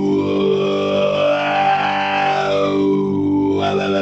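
Electric guitar chord run through an Electro-Harmonix Iron Lung vocoder pedal with distortion added, its tone shaped by a sung, repeated 'bow' vowel into the microphone. The result is a strong, talking-guitar sound that sweeps up and down about once a second over the held chord, breaking into quicker syllables near the end.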